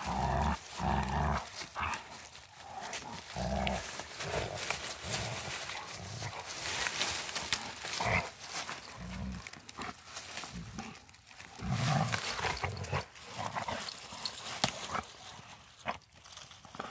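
Two Rottweilers nosing through a pile of dry branches and leaf litter. Brushwood rustles and crackles throughout, with short low dog sounds every few seconds.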